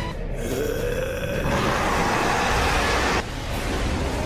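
A man's strained, growling yell rising in pitch, which breaks into a loud, harsh roar that cuts off suddenly after about three seconds, over background music.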